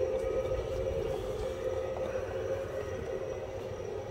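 Model train running past on its track: a steady motor hum over a rumble of wheels on rail, slowly fading as the coaches go by.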